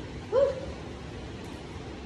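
A short exclaimed "woo" from a woman's voice, one quick rise and fall in pitch, over the steady hiss of air conditioning running loudly enough to cover speech.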